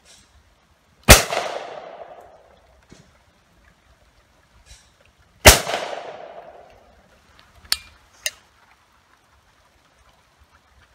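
Shotgun fired twice at clay targets, about four seconds apart, each shot trailing off in a long echo. Two short, sharp clicks follow near the end.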